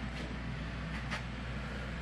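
Steady low background hum of the room, with two faint ticks, the first just after the start and the second about a second in.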